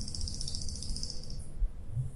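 Whiteboard marker squeaking and scratching as it draws a line across the board, stopping about one and a half seconds in.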